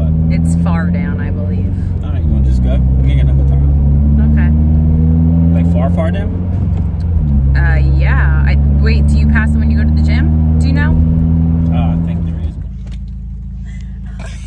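Car engine and road drone heard inside the cabin while driving, a steady low hum. Its pitch drops suddenly about two and seven seconds in, then climbs again. It cuts off shortly before the end.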